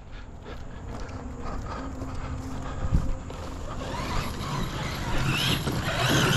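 Footsteps on a dirt track, walking at an even pace, with a rising whirring noise building up over the last couple of seconds.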